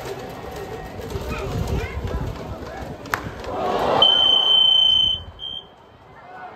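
A baseball bat cracks sharply on a pitched ball about three seconds in, and crowd voices rise after it. Then a loud, shrill, steady whistle sounds for about a second, followed by a short second blast.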